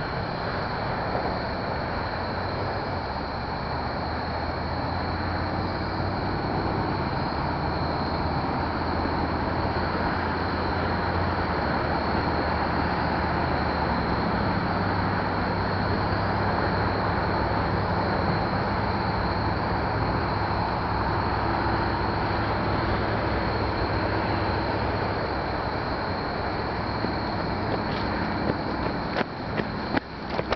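A vehicle engine running steadily nearby, its low hum shifting in pitch a few times. A few sharp knocks come near the end.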